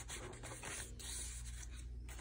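Soft rustling and sliding of paper as hands handle cards tucked in a pocket of a handmade paper junk journal.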